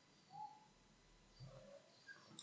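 Near silence: room tone, with two faint, brief tones, one just after the start and one about a second and a half in.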